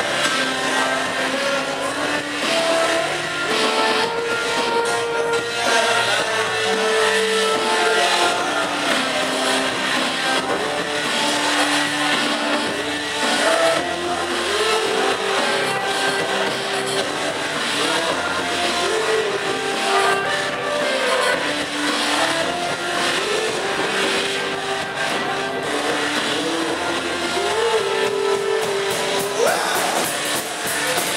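Live rock band playing with drums, keyboards and electric guitar: long held notes step from pitch to pitch over a steady wash of cymbals and distortion, and a sliding note rises sharply near the end.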